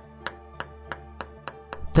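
Soft background music with sustained tones, overlaid by a run of sharp clicks about three a second, coming a little faster near the end: a table tennis ball bouncing.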